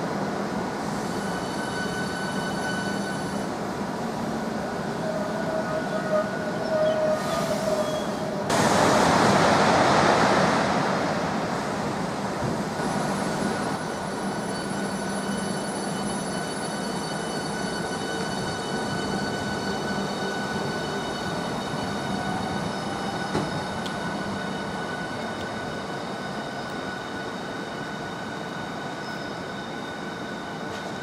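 Southeastern Class 395 Javelin high-speed electric train moving through the station with a steady whine of several tones, a brief squeal about six seconds in, and a loud rushing noise starting about eight seconds in that fades over a few seconds.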